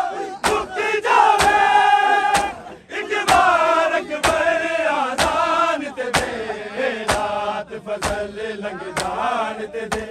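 Men chanting a noha while a crowd of mourners beats their chests in unison, a sharp slap landing about once a second.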